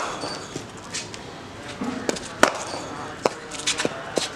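Several sharp knocks and clicks at irregular moments, the loudest just past halfway and a quick cluster near the end.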